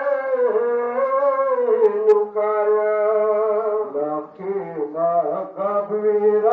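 Male voice chanting a Pashto noha, a Muharram lament, in long held, slowly bending notes, with a short break a little past four seconds in.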